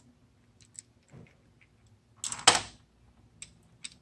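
Small metallic clicks and ticks of a Phillips screwdriver working the top-cap screws out of a scooter's CVK carburetor, with one brief louder rustling noise about two and a half seconds in.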